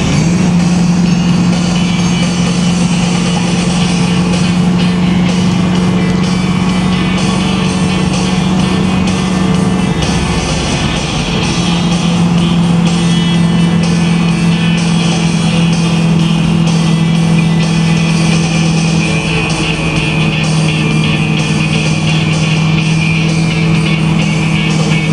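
A 1969 Camaro Z/28's 302 V8 pulling at a steady cruise, its exhaust note holding one pitch. About ten seconds in it eases off briefly and comes back at a slightly lower pitch. Music plays over it.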